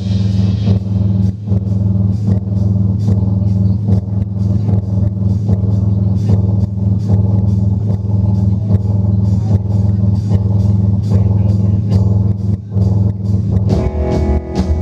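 Live rock music: a loud, steady low drone held without change, under a regular beat of sharp drum and cymbal hits. Near the end the music shifts to fuller playing.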